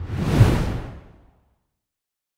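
A whoosh transition sound effect that swells to a peak just under half a second in and fades away by about a second and a half.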